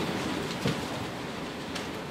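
Steady room hiss, with a faint click near the end.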